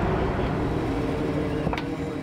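Engine of the lifting machinery running steadily with a low hum while a loaded trash dumpster is hoisted, with one sharp metallic click near the end.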